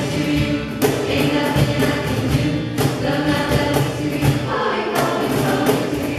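Jazz choir of young mixed voices singing through handheld microphones, with a sharp percussive hit about every two seconds.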